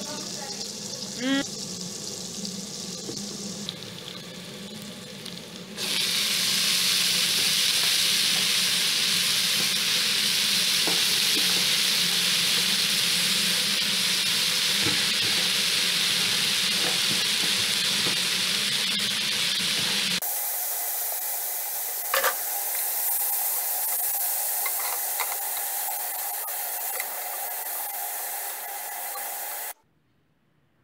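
Food sizzling in oil in a pot as it is stirred, with a short spoon scrape on the pot about a second in. About six seconds in the sizzle turns suddenly much louder and stays even, as chopped greens fry. Near twenty seconds it changes abruptly to a thinner sizzle with an occasional click of the spoon, then cuts off just before the end.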